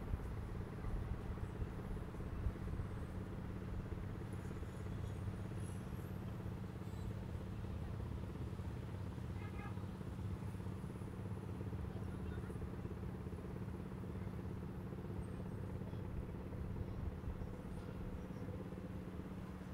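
A steady low mechanical hum with several held low tones over a rumbling background, and faint distant voices.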